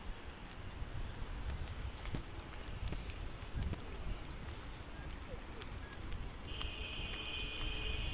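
Wind rumbling on the microphone of a moving bicycle. About six and a half seconds in, a vehicle horn sounds one long, steady blast that is still going at the end.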